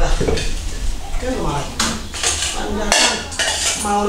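Bowls and metal basins clattering as they are handled, with several sharp knocks.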